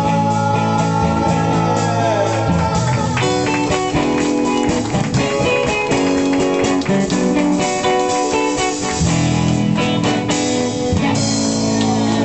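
Live band music led by electric guitar, with a drum kit.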